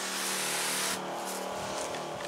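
Electric garden sprayer running: a steady motor hum under the hiss of the spray from the nozzle, the hiss changing in tone about a second in.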